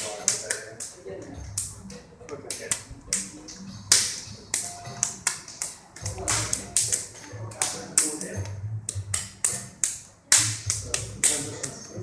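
Palms slapping against forearms several times a second in an uneven rhythm, the sharp contacts of a double pak sao trapping drill, each slap a trapping hand clearing the partner's arm.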